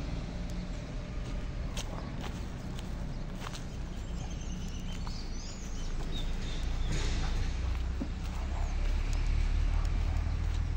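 Footsteps of a person walking through grass and dry dirt, with scattered sharp crunches over a steady low rumble.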